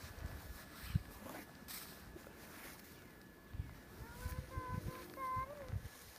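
Soft low thumps of snow being patted and swept off a car by hand. A brief, faint, high-pitched vocal sound comes about four seconds in.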